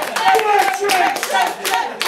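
Audience clapping after the song has ended: uneven, separate claps from a small crowd, with voices calling and talking over them.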